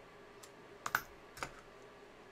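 A few light, sharp clicks and taps, the loudest about a second in, from hands handling and pressing paper stickers onto a planner page.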